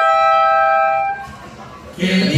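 Two mariachi trumpets holding a long steady note in harmony, which fades out about a second in and leaves a short lull before the band comes back in.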